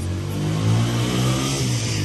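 A motor vehicle's engine passing close by: a low hum that grows louder and rises a little in pitch, with a hiss that builds to its loudest about one and a half seconds in.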